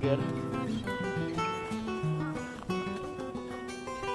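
Background music: a plucked acoustic guitar playing a melody of held notes.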